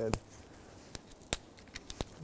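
Small dead twigs snapped off a branch by hand: several short, sharp, clean snaps, the loudest a little past halfway. A clean snap like this marks the wood as dead and seasoned.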